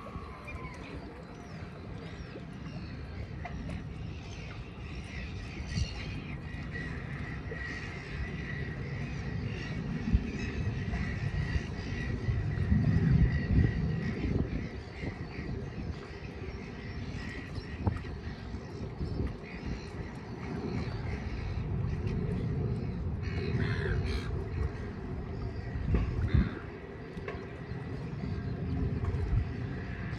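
Wind buffeting the microphone in uneven gusts, strongest about halfway through and again near the end, with scattered bird calls over it.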